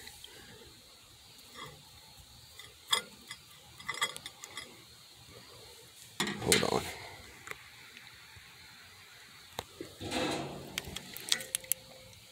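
Handling noises: scattered clicks, knocks and rustles, with louder bouts about six and a half seconds in and around ten seconds, over a faint steady hiss.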